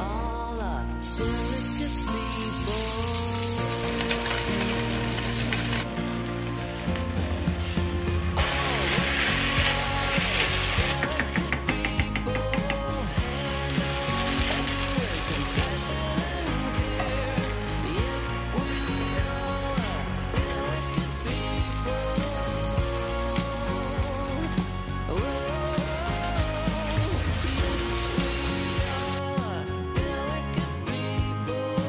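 Background music, a song playing steadily throughout. Beneath it, a pan of risotto sizzles in several stretches that start and stop abruptly.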